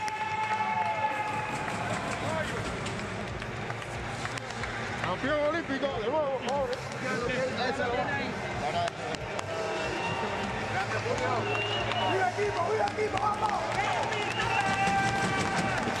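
Several people shouting and cheering in celebration, some calls held long, in a large, sparsely filled arena.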